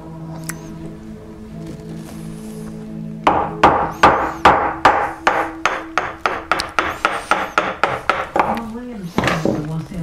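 A wooden carver's mallet tapping a chisel driven into the marked line of a turned, fluted wooden blank, splitting the turned piece apart. It is a quick, even run of about twenty light taps, three to four a second, starting about three seconds in.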